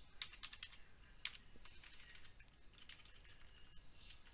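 Faint typing on a computer keyboard: an irregular run of quick key clicks.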